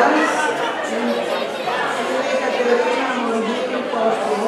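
Several people talking over one another in a large room, a woman's voice close on a microphone among the chatter.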